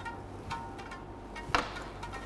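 Faint background music, with one sharp clink about one and a half seconds in: ice against a glass as it is being chilled with ice.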